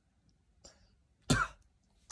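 A short, sharp cough-like burst from a person, a little over a second in, with a fainter one just before it.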